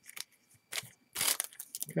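Foil trading-card pack wrapper crinkling as it is pulled off and handled, in a few short crackles, the loudest about a second in.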